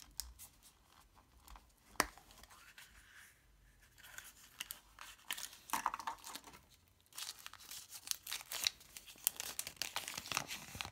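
A plastic Kinder Surprise toy capsule snapping open with a sharp click about two seconds in, then the crinkling and rustling of the toy's thin plastic wrapper and folded paper leaflet being pulled out and unwrapped, busiest in the second half.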